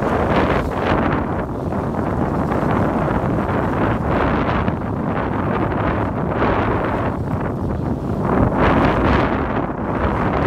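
Wind buffeting the microphone over the rush and slosh of choppy sea water along a small sailboat's hull, swelling every second or two as waves pass under the boat.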